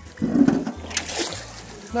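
A sap bucket scooped into a shallow creek: a splash as it goes in about a quarter second in, then water gushing and trickling into the bucket, dying away after about a second.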